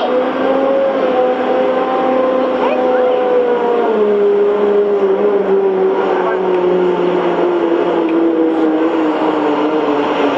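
A loud sustained drone of several pitched tones, sinking slowly and steadily in pitch over a steady hiss. It is an eerie sound-design effect laid under a silent scene in a psychological thriller.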